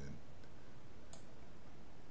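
A single computer mouse click about a second in, over low steady background noise.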